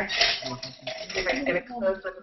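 A small metal tin of buttons being handled, the buttons clinking and rattling against the metal.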